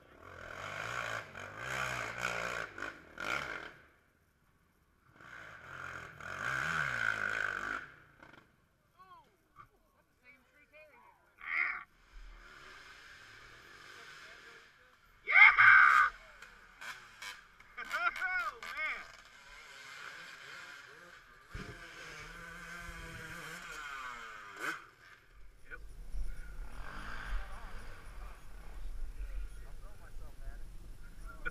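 Quad (ATV) engines revving in repeated bursts as they climb a steep dirt hill, with onlookers' voices and shouts mixed in. The pitch of the engines rises and falls.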